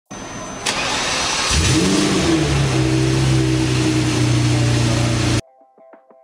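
Car engine starting: after a burst of noise, the engine catches about a second and a half in, revs up once and settles into a steady idle. The sound cuts off suddenly near the end.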